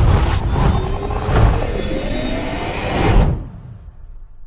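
Logo sting sound effect for the end card: a rumbling whoosh with a slowly rising tone that builds, then cuts off about three seconds in, leaving a short fading tail.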